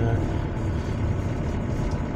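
Engine and road noise of a house camper heard from inside the cab while driving, a steady low rumble.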